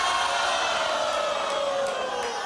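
Talk-show studio audience reacting all at once: many voices in one long drawn-out 'ooh' whose pitch slowly falls.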